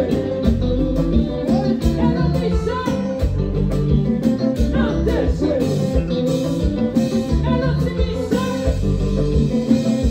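Haitian konpa band playing live music: a steady driving beat with bass, electric guitar and keyboards, and singing over it.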